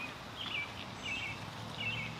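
A small bird gives short chirps that slide down in pitch, several of them at roughly half-second intervals, over a steady outdoor background hum.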